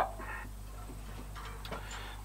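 A quiet pause between words: a steady low hum in the background, a soft breath just after the start, and a faint click near the end.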